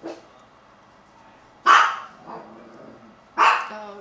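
A dog barking twice, two short loud barks about a second and a half apart.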